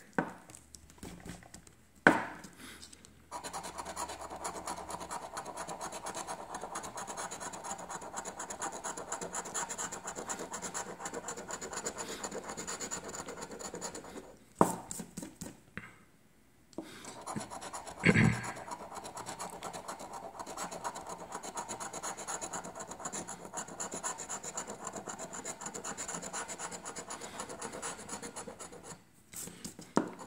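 A coin scraping the latex coating off a scratch-off lottery ticket in quick, rapid strokes. The scraping pauses briefly about halfway, and a short louder thump comes soon after it resumes.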